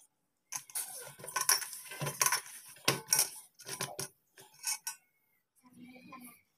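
Hands kneading dough in a stainless steel bowl: an irregular run of knocks and clinks against the steel, stopping about five seconds in.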